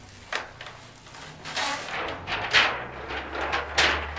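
Clear plastic carrier sheet being peeled off heat transfer vinyl pressed onto a nylon bag, then handled: several crinkly rustles, the loudest in the second half.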